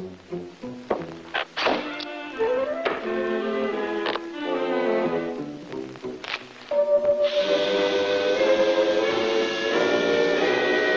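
Orchestral cartoon score, quick shifting lines punctuated by several sharp thunks and hits in the first seven seconds. It then swells into a louder, held full-orchestra passage from about seven seconds in.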